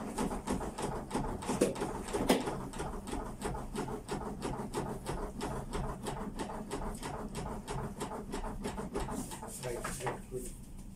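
CPR training manikin clicking steadily under rapid chest compressions, a short click with each push and release, several a second; the clicks stop near the end as the compressions finish.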